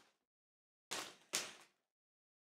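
Two short, faint handling noises about half a second apart, from a hot sauce bottle and a plastic zipper bag being handled as wings are sauced.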